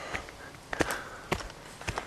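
Footsteps on a leaf-littered dirt path in woods: a few footfalls about half a second apart.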